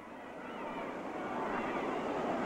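Arena crowd noise, a steady murmur of many voices that swells gradually.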